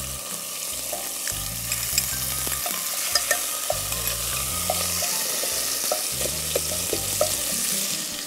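Small pieces of chicken sizzling steadily in hot oil in a nonstick pan, stirred with a wooden spatula that scrapes and taps against the pan in short ticks.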